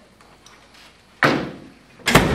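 A single loud slam about a second in, sudden and dying away over half a second.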